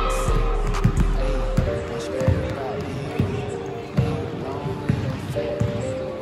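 A basketball bouncing on a hardwood gym floor, a series of irregular thumps, with voices and music in the hall.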